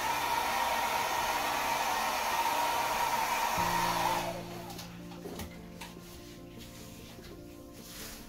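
Handheld hair dryer blowing over wet poured acrylic paint to pop air bubbles: a steady rush of air with a steady high hum, switched off about four seconds in.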